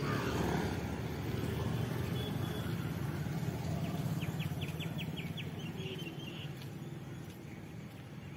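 Steady low engine rumble and road noise of a motorcycle ride through town traffic, easing slightly toward the end. About four seconds in comes a quick run of about eight high ticks or chirps.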